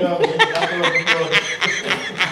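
A person chuckling, mixed with bits of speech.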